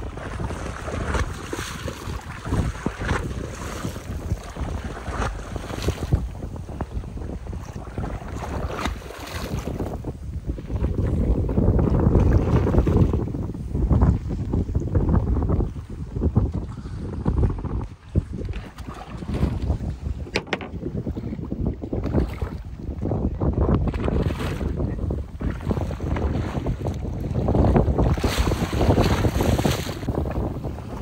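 Wind buffeting the microphone over the wash of sea water around a small wooden boat, with louder gusts around ten seconds in and again near the end.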